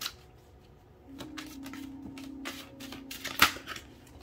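Oracle cards being shuffled by hand: a run of soft flicks and snaps of card stock, with one sharper snap about three and a half seconds in. A steady low hum sounds under the shuffling from about a second in.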